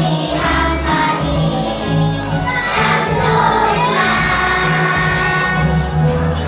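Children's choir singing over a backing track with a steady bass line and beat.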